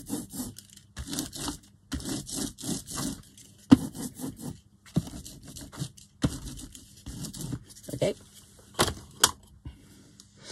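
Rapid back-and-forth scraping of a hand-held block spreading gesso over paper and a cutting mat, in quick runs of short strokes with brief pauses between them. A couple of sharp taps fall about a third of the way in and near the end.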